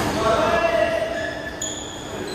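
A basketball bouncing on an indoor court during a pickup game, with players' voices calling out, echoing in a large hall.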